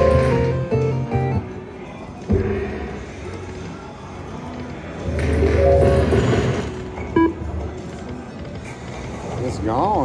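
Video slot machine game music and electronic jingles. The first jingle steps through a tune over a low beat for the first second and a half. A sharp click follows a little after two seconds, and a second burst of tones comes around five to six seconds.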